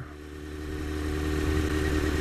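Honda CBR954RR Fireblade's inline-four engine running at low road speed, with wind and road noise, growing steadily louder.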